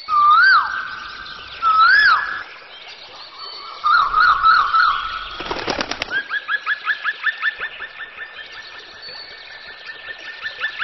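Songbirds singing: two loud whistled notes that swoop up and down, then a quick warbling trill. About halfway through comes a short rough burst, followed by a fast run of repeated chirps that slowly fades.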